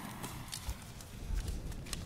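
Footsteps hurrying over grass and ground, a run of irregular soft thumps and light clicks as the person moves away from a freshly lit firework fuse.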